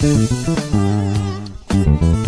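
Electric bass guitar played fingerstyle in a funk-soul bass line, over the recorded song's backing track with other instruments.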